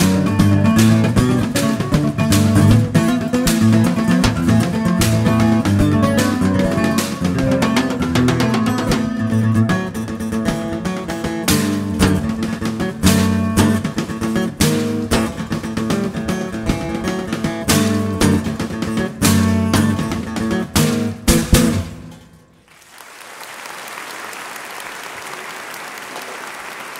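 Acoustic guitar tune with junkyard percussion of struck cans and metal, playing a steady rhythm of sharp hits. About 22 seconds in, the music stops on a final hit and audience applause follows.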